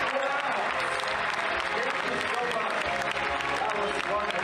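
Large audience applauding steadily, with voices in the crowd and a laugh near the end.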